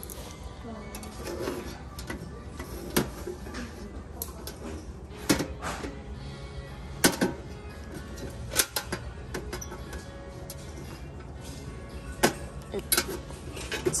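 Objects handled on a metal store shelf: a few scattered sharp clicks and knocks as a small metal cash box is touched, picked up and tipped, over faint background music.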